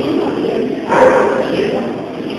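A young jaguar gives a short, loud call about a second in, over people talking.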